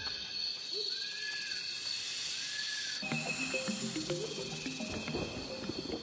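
Channel logo intro sting: music with jungle-themed sound effects. A loud hiss swells about two seconds in and cuts off sharply at three seconds, followed by short, lower-pitched animal-like calls.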